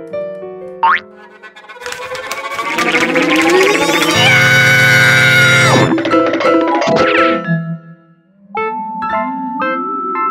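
Cartoon music and sound effects: a quick rising glide about a second in, then a loud swell that builds for several seconds and ends in a sharp downward drop, followed after a brief lull by light plucky music.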